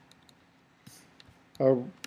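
A few faint, separate clicks of computer keyboard keys, then a short spoken 'uh' near the end.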